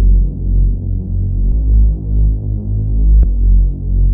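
Instrumental trap beat stripped down to deep, pulsing bass under steady low synth chords, with nothing bright on top: no hi-hats and no high melody.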